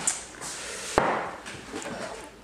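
A glass jar set down on a wooden tabletop: a light knock at the start and a sharper, louder knock about a second in, with a short ring after it.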